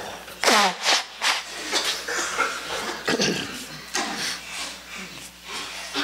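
A man blowing his nose hard into a tissue close to a microphone: a loud, wet honk about half a second in, followed by several shorter blows.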